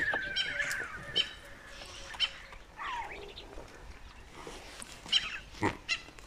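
Tiny lion cubs giving high-pitched mewing calls: one held cry in the first second and a falling cry about three seconds in. Several sharp clicks or snaps are mixed in as they scramble on the tree.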